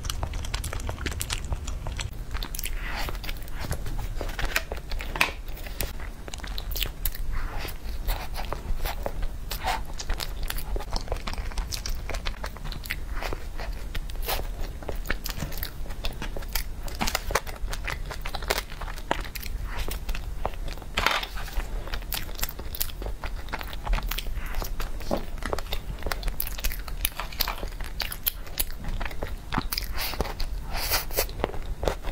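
Close-miked eating: a person biting and chewing soft cream cakes, a matcha cake and then a chocolate roll cake, with many small wet mouth clicks and smacks throughout.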